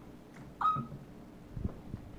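A long-tailed macaque gives one short, high squeak that rises in pitch, followed by two soft knocks about a second later.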